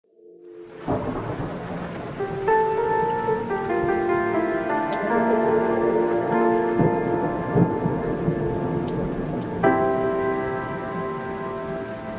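Rain with rolls of thunder, fading in over the first second. Held chords come in about two and a half seconds in and change near the end.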